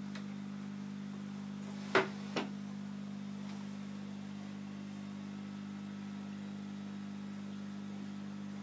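Steady low hum of running aquarium equipment, with two sharp knocks about two seconds in, under half a second apart.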